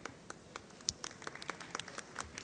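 Light, scattered applause: a few people clapping in irregular, sparse claps, one clap louder than the rest a little under a second in.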